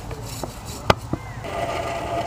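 A few sharp clinks as blacksmith's tongs are handled at the forge, the loudest just before a second in, one followed by a brief ring. About halfway through a steady hum sets in.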